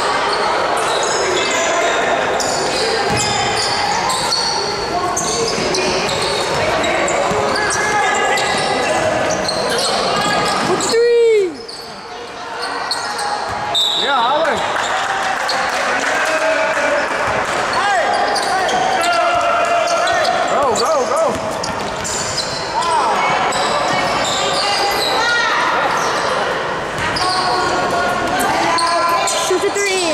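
Basketball game sounds in a gymnasium: many voices of players and spectators overlapping, with a basketball bouncing on the court.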